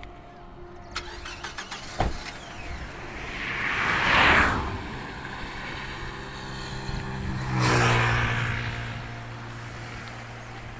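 A minivan door shutting with a sharp thud about two seconds in. Then two road vehicles pass close by, each rising and fading away, one around four seconds in and one around eight seconds in; the second leaves a steady low engine hum.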